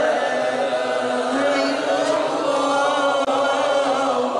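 A group of men chanting together in unison in long, drawn-out held notes, led by one voice on a microphone.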